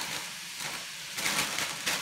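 Stir-fry sizzling in a frying pan while vegetables are shaken in from a plastic bag, with crinkling and rustling that picks up about a second in.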